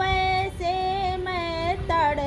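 A woman singing a devi geet, a Hindi devotional song to the goddess, drawing out long held notes that slide between pitches.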